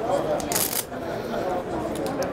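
SOG trauma shears being drawn out of their nylon pouch, with a brief scrape about half a second in, over the chatter of a busy hall.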